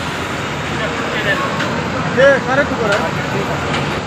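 Steady outdoor background noise, with vehicle traffic running under it. Brief snatches of people's voices come through about a second in and again around the middle.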